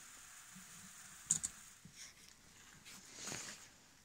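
Quiet room tone with one sharp click a little over a second in and a few soft shuffles and rustles.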